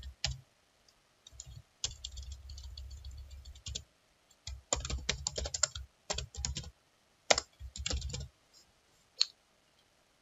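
Typing on a computer keyboard in several short runs of key clicks, then one lone click near the end.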